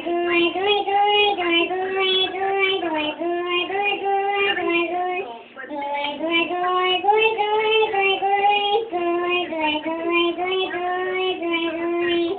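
A person singing a tune in a 'chipmunk voice', made by holding a hand over the mouth. It comes as two sung phrases of held, stepping notes, with a brief pause about five and a half seconds in.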